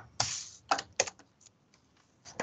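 A few separate clicks on a computer keyboard, spread over about a second, as the presenter advances the slide.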